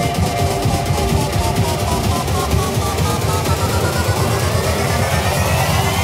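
Electronic dance music in a build-up: a rapid drum roll pounds in the low end. From about halfway through, a synth sweep of several tones rises steadily in pitch.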